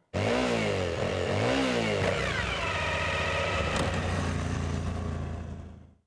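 Motorcycle engine revved twice, then dropping in pitch and settling into a steady idle that fades out near the end.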